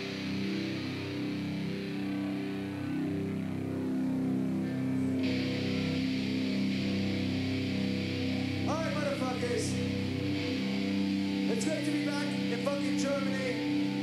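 Live heavy metal band's electric guitars and bass holding a sustained, droning chord. From about nine seconds in, voices rise and fall over it.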